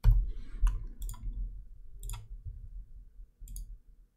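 Computer mouse and keyboard clicks: about five sharp, irregularly spaced clicks with soft low thuds beneath them.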